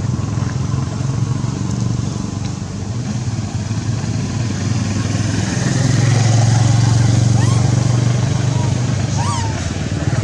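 A nearby engine running steadily with a low pulsing hum, growing louder about six seconds in. A few short faint chirps come near the end.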